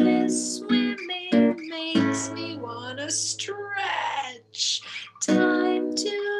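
A woman singing a children's song while strumming an acoustic guitar.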